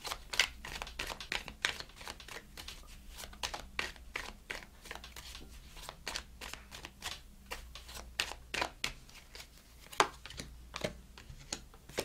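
A deck of tarot cards being shuffled hand over hand: an irregular run of quick, soft card flicks and slaps, a few a second, with one sharper snap about ten seconds in.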